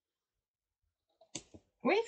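Near silence, then about a second and a half in a single short, sharp click with a couple of fainter ticks, just before a woman starts to speak.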